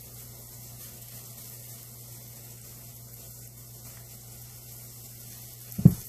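Steady low background hum with faint hiss: room tone while nail polish is brushed on. Near the end there is one short, loud low thump.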